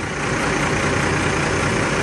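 Semi truck's diesel engine idling steadily, a constant rumble with a broad rushing noise over it.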